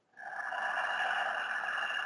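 One long audible breath by the female narrator into a close microphone, lasting about two seconds, taken as part of a guided meditation breath.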